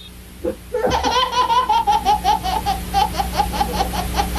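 A baby laughing hard: after a short sound about half a second in, a long run of rapid, even laugh pulses begins just before a second in and slowly drops in pitch. A steady low hum runs underneath.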